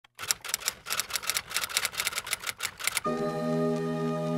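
A fast, uneven run of sharp clicks for about three seconds, then a held chord of background music sets in and sustains.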